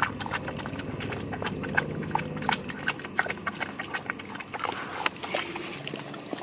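A dog feeding at a metal bowl: quick, irregular clicks and clinks of its mouth against the bowl, thinning out near the end as it lifts its head.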